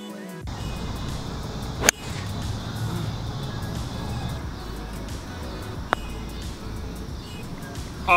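A golf iron strikes a ball with one sharp click about two seconds in, and a putter taps a ball with a smaller click about six seconds in, both over background music.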